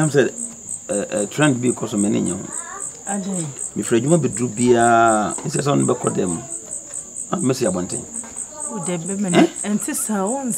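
Crickets chirping steadily, a high, evenly pulsed trill of about four chirps a second, under people talking.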